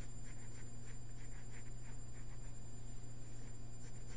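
Pen tip drawing on grid paper: a series of faint short scratches, mostly in the first half, over a steady low hum.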